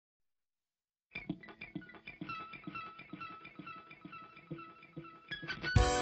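Alternative rock song intro: after about a second of silence, a lone guitar picks a repeating figure of short notes, then the full band with drums comes in loudly just before the end.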